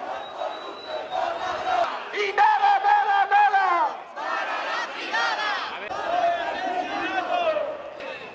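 Protest crowd chanting a slogan in unison, led by a man shouting through a megaphone, in two rounds of a few seconds each.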